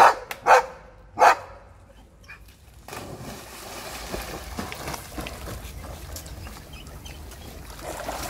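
A dog barks three times in quick succession, then splashes steadily as it runs and wades through a shallow stream.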